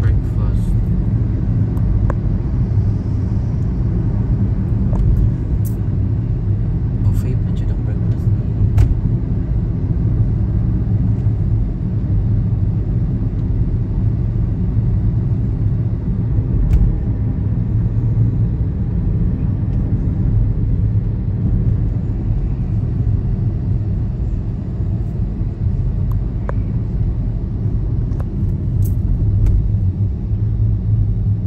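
A car driving, with a steady low rumble of engine and road noise and a few faint clicks.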